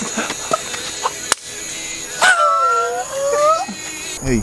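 One long howl that starts high, dips and then holds level for over a second, over crickets chirping steadily. A single sharp click comes a little over a second in.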